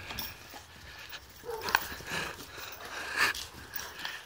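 Boxer dogs jumping and scuffling as they play with a balloon, with a few short bumps as it is batted about.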